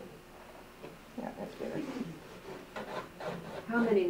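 Indistinct, low talk starting about a second in, over the faint rubbing of a pencil drawing on paper.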